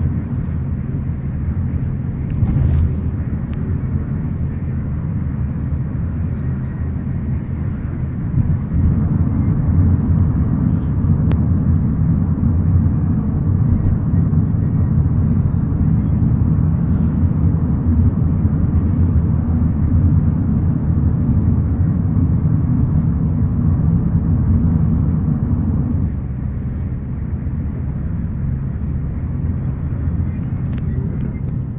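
Steady low rumble of a moving car's engine and tyres heard from inside the cabin, easing slightly a few seconds before the end.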